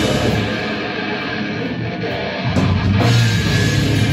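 Goregrind band playing live: distorted electric guitar, bass guitar and drum kit heard loud through a club PA. The low end drops back for about two seconds, then the full band comes back in about two and a half seconds in.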